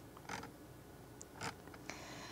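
A near-quiet pause: faint room tone with a few soft, short noises, one about a third of a second in and two more around a second and a half in.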